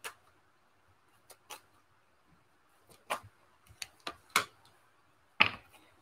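A deck of tarot cards being shuffled by hand: a scattering of short, soft card clicks and taps at irregular intervals, a few of them slightly louder between about three and four and a half seconds in.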